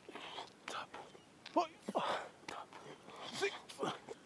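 Breathy exertion sounds from a man doing push-ups: hard, irregular exhalations several times a second, with a short voiced grunt about one and a half seconds in.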